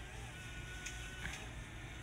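Faint low rumble of wind on the microphone, with a thin steady high tone that stops about a second and a half in.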